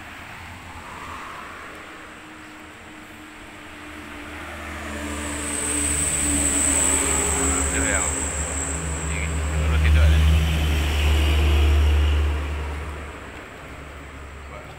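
A motor vehicle's engine builds up over several seconds, is loudest about ten seconds in, and falls away near the end, like a vehicle passing close by.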